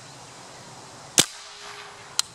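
A single sharp, loud report of a big-bore .50 caliber Sam Yang Dragon Claw PCP air rifle firing, about a second in, over a steady background hiss.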